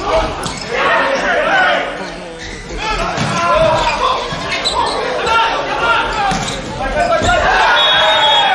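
A volleyball rally in an indoor arena: several sharp smacks of hands striking the ball (serve, passes, set, spike), with shouting voices throughout and the reverberation of a large hall.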